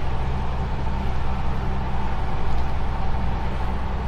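Heavy truck's diesel engine running steadily as it climbs a mountain grade, with steady road and wind noise over it.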